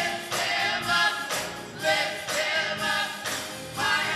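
Gospel choir singing with instrumental accompaniment.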